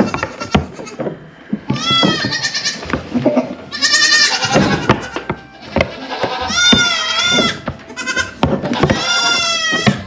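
Nigerian Dwarf goats bleating, about five high, wavering calls, the longest ones near the middle and near the end. Short knocks and clatter come in between.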